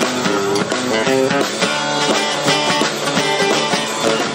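Live rock 'n' roll band playing an instrumental passage: guitars picking and strumming a melody over a drum kit.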